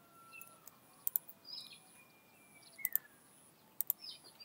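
A few faint clicks of a computer mouse and keyboard, some in quick pairs, as fields in a software dialog are edited. Faint thin high chirps sound in the background.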